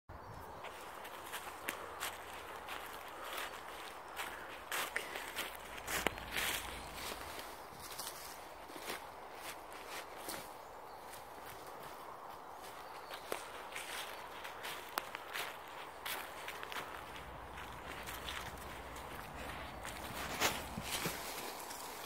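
Footsteps crunching and rustling through a thick layer of dry fallen leaves, in an irregular walking rhythm with sharp crackles among the steps.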